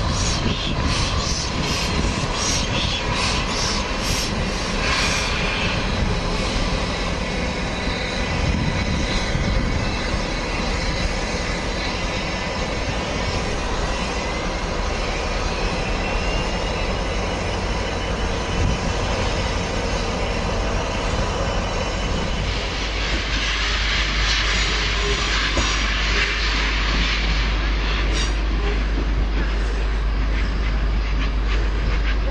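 Rebuilt Merchant Navy class steam locomotive 35028 Clan Line working through the station, with regular beats about two a second at first that settle into a steady running noise. Near the end a loud hiss of steam and a deep rumble as the engine passes close by.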